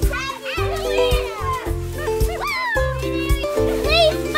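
Young children shouting and squealing at play, high-pitched and excited, over background music with a steady bass line.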